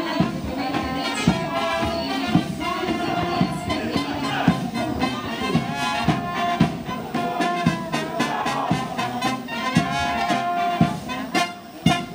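Military police marching band playing a march: brass, with tubas and horns, over a steady drum beat of about one strike a second.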